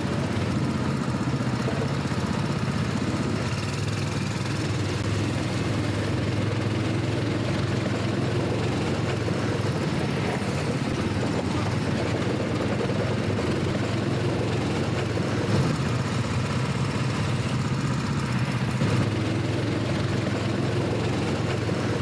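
Go-kart engine running steadily at low speed as the kart rolls slowly into the pit lane at the end of the session.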